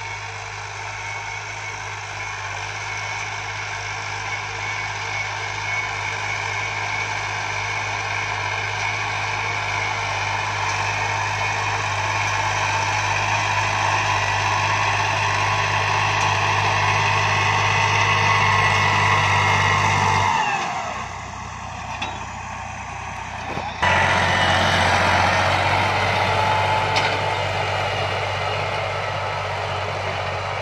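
Diesel tractor engine running under load while pulling a disc harrow through the soil, growing steadily louder as it draws near. About two-thirds of the way through, the engine note falls and quietens, then comes back loud abruptly a few seconds later.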